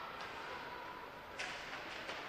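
Faint ice-rink game noise from skates, sticks and a distant crowd, with one sharp knock about one and a half seconds in.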